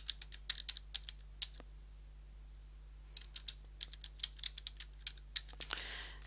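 Typing on a computer keyboard: quick runs of key clicks, broken by a pause of about a second and a half near the middle.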